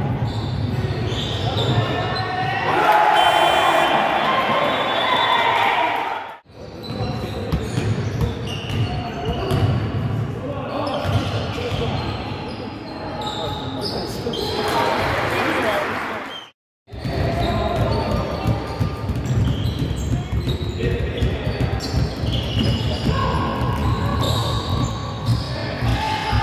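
Basketball game sounds in an echoing sports hall: the ball bouncing on the court and players' shouts and voices. The sound cuts out abruptly twice, about six seconds in and again about seventeen seconds in.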